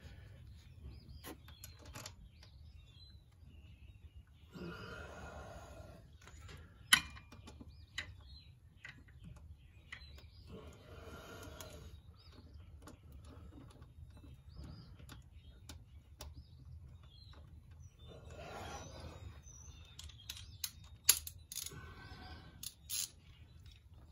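Small metal clicks and taps of a drain bolt being threaded back into a scooter's gear case and snugged with a 10 mm socket: one sharp click about seven seconds in and a run of clicks near the end. Faint, mostly quiet handling between them.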